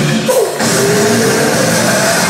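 A rock band playing live and loud: electric guitar, bass guitar and drum kit. The sound dips briefly about half a second in, then comes back with a held note.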